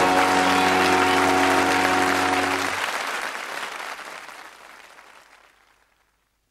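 Studio audience applauding over the held closing chord of a sitcom's theme music; the chord stops about three seconds in and the applause fades away.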